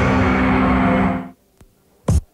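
Radio station jingle music ending on a held chord that cuts off sharply just over a second in, leaving a short near-silent gap with one faint click.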